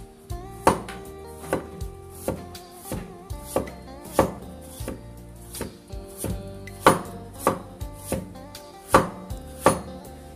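Cleaver slicing through a peeled kohlrabi and knocking on a wooden chopping board, a sharp chop about three times every two seconds, over background music.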